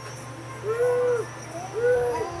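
Two hooting, whistle-like notes, each rising then falling back in pitch, about a second apart, over a faint steady hum.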